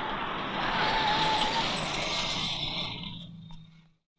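Engines and tyre noise of a small convoy of jeeps and a car driving along a road, fading away over the last second.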